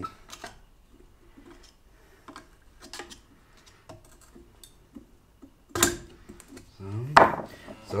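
Faint metallic clicks and scrapes of circlip pliers working the wheel-bearing retaining circlip in a steel BMW E36 rear trailing-arm hub, with one louder sharp clack near the end.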